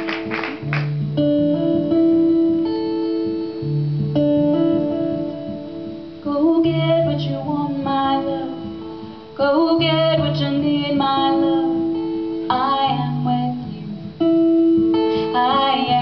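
Instrumental opening of a slow acoustic song: plucked guitar with held notes and a low bass note about every three seconds, then sliding melodic phrases joining about six seconds in. The last of the applause dies away in the first second.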